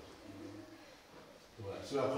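A quiet pause in a man's low voice, with faint low voice sounds; the voice comes back louder just before the end.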